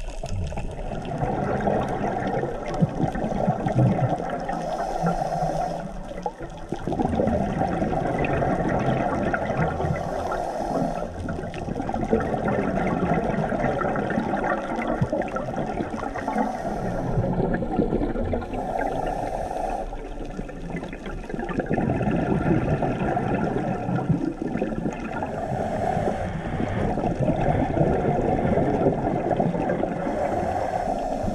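Scuba breathing heard underwater through the regulator: exhaled bubbles gurgle for several seconds at a time, with a short hissing inhalation about every five to six seconds.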